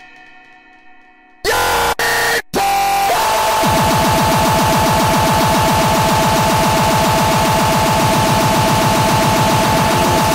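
Breakcore electronic music: a ringing bell-like chord fades out, then loud bursts of distorted noise cut in and out about a second and a half in. From about three seconds a dense, harsh wall of distorted noise holds, with a steady high tone on top and a fast buzzing pulse underneath.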